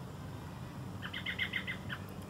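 A bird calling outdoors: a quick series of short chirps, about seven in a second, in the second half.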